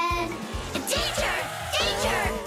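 Upbeat children's song backing music with a steady beat.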